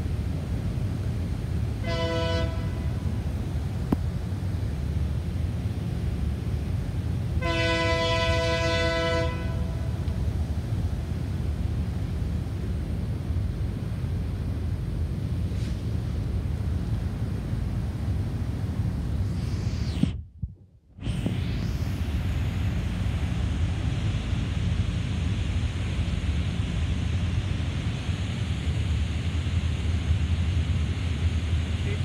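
Air horn of an approaching Norfolk Southern diesel locomotive, several notes sounding together as a chord: a short blast about two seconds in, then a longer blast of about two seconds a few seconds later. Both come over a steady low rumble. The sound cuts out for about a second roughly two-thirds of the way through.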